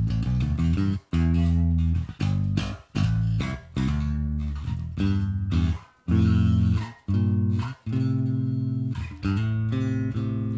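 Electric bass guitar played clean through a Line 6 Helix's Ampeg SVT amp model and 8x10 Ampeg SVT cab model with a ribbon mic, with no other effects in the chain. It plays a riff of sustained low notes broken by short gaps.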